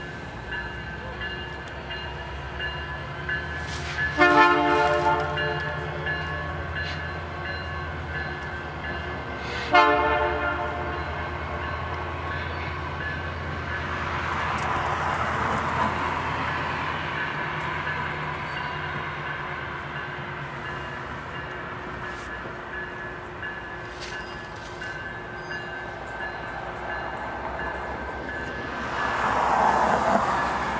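Canadian Pacific GP20C-ECO diesel locomotive running steadily while sounding its horn twice: a blast of about a second some four seconds in, then a shorter one near ten seconds. A broad rush of train noise swells in the middle and again at the end.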